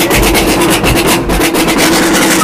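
A street drum band with large marching bass drums playing a loud, fast, continuous beat, with quick strokes packed closely together.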